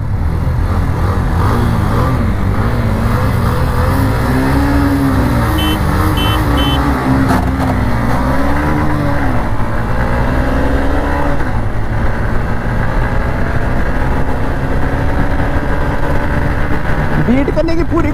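125 cc single-cylinder motorcycles accelerating hard from a standing start in a drag race. The engine note rises and falls several times in the first half as the bike goes up through the gears, then settles into a steadier high drone as speed builds, with wind noise rushing over the microphone.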